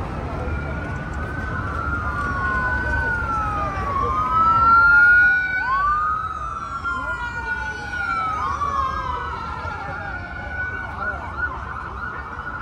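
Emergency vehicle siren wailing over street traffic. The pitch rises quickly and glides slowly back down in repeated cycles of two to three seconds, loudest about four to five seconds in.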